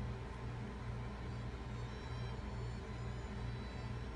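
Low steady hum that pulses about twice a second, with faint thin high tones over it.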